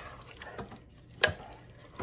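A plastic spoon stirring ground beef and diced tomatoes in a slow-cooker crock, with a few sharp knocks of the spoon against the pot. The loudest knock comes just past a second in.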